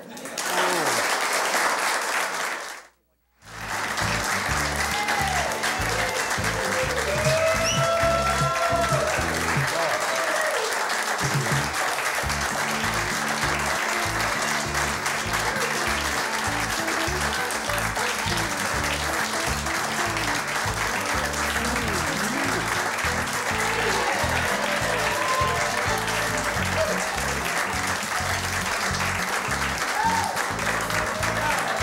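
Closing theme music with guitar, played over applause. The sound cuts out briefly just before three seconds in, and the music comes in at about three and a half seconds.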